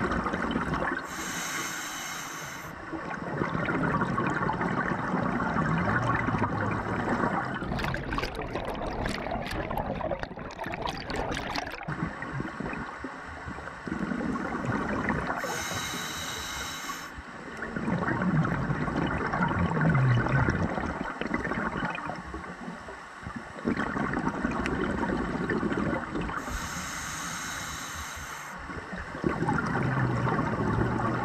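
Underwater sound of scuba breathing through a regulator: three hissing inhalations, roughly eleven to thirteen seconds apart, with gurgling bubbles of exhaled air between them.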